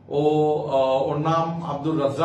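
Only speech: a man talking in slow, drawn-out syllables.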